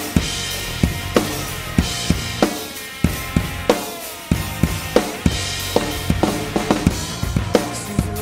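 Acoustic drum kit playing a steady rock beat of kick and snare with cymbal wash, over a recorded rock song's guitar and bass. A quicker run of drum hits comes near the end, a fill.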